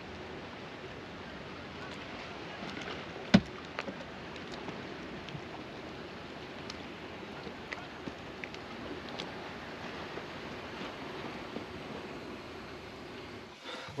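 Small waves lapping and splashing steadily, with scattered light ticks and one sharp knock about three seconds in.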